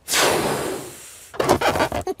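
Cartoon sound effect of a balloon being blown up: one long breathy rush of air into the balloon, loud at first and fading over about a second, followed near the end by a brief rubbery rubbing sound.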